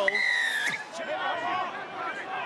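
A referee's whistle blown once: a single short blast of just over half a second that falls slightly in pitch, signalling the try. A stadium crowd murmurs underneath.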